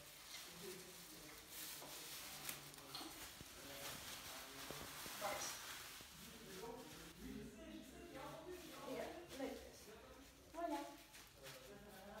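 Faint crinkling of a thin plastic bag as it is pulled over bleach-coated hair and pressed into place, with quiet talk in the second half.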